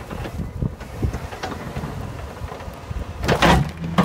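A Dodge Neon plow car working through wet, heavy snow with its homebuilt blade: an uneven rumble with scattered knocks and clunks. About three seconds in comes a loud, brief crunching scrape, and a sharp clunk follows near the end.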